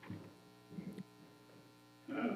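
Low, steady mains hum in the meeting's audio feed, with a brief faint sound just before the one-second mark.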